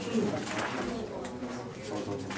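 Classroom chatter: several students talking at once in small groups, their voices overlapping into a steady murmur.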